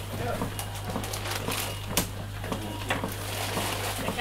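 Chest compressions on a resuscitation manikin, a series of short knocks about twice a second, over a steady low electrical hum from the ICU equipment.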